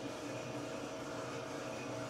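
Steady hum and hiss of a small gas-fired drum coffee roaster running mid-roast, its drum turning and airflow opened up while the beans go into the Maillard stage.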